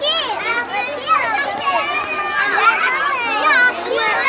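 A group of young children talking and calling out over one another in high voices, many voices at once.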